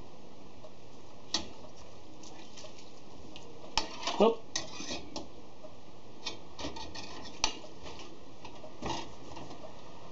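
A metal utensil stirring quills in liquid dye in an enamel saucepan, clinking and scraping against the pan. The strokes are scattered, with the loudest cluster about four seconds in, including a short scrape that drops in pitch.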